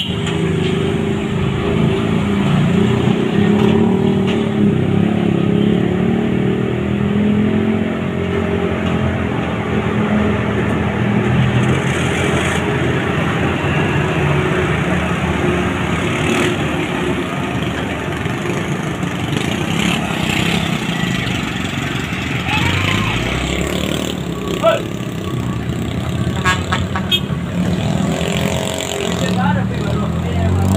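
Heavy diesel truck engines labouring up a steep hairpin climb. Other car and motorcycle engines are heard around it, with one rev rising about two-thirds of the way through.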